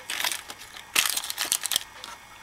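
Crinkling of a paper card handled by hand over a ceramic jewellery dish, in two spells, the second, about a second in, louder.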